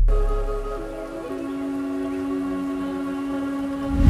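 Background music: a deep boom dies away under a sustained synth chord of held notes, a few of which step down in pitch about a second in.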